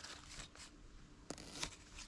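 Hand pruners snipping through colocasia leaf stalks: a couple of short, faint snips, the clearest a little past halfway, among light rustling of the leaves.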